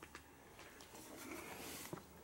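Quiet room tone with a few faint, soft clicks and a faint rustle about a second in.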